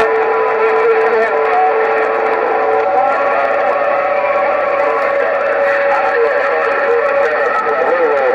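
President HR2510 radio's speaker playing received 27 MHz band signal: a loud, steady rush of static with steady heterodyne whistles from overlapping carriers, one whistle giving way to a slightly higher one about three seconds in.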